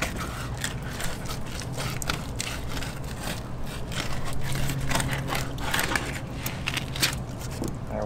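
Fillet knife cutting a bullseye snakehead fillet away from its skin on a plastic fillet table: a steady run of short scraping and ticking strokes. A steady low hum runs underneath.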